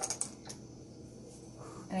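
A few small sharp clicks in the first half second, then quiet handling noise: a glass dropper and its bottle being handled as drops of food coloring go onto the dough.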